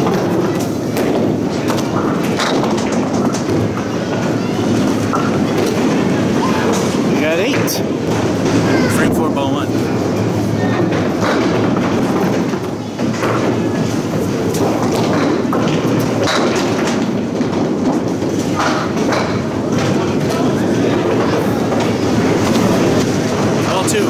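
Candlepin bowling alley din: a ball rolling down a wooden lane and pins being knocked, with a few sharp knocks, over a steady loud hubbub of voices and machinery.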